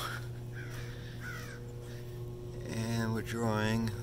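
A plug-and-play hot tub's jet pump running on low, a steady electric-motor hum. About three seconds in, two short drawn-out calls sound over it.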